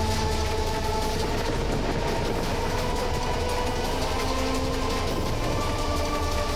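Dramatic background score: long held notes that change pitch every second or two over a dense, continuous low rumbling drone.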